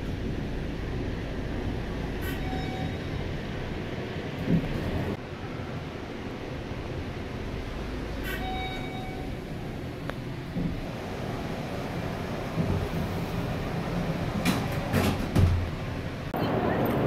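Steady low rumble of a busy shopping-mall atrium, with two short tones about six seconds apart and a few sharp clicks near the end.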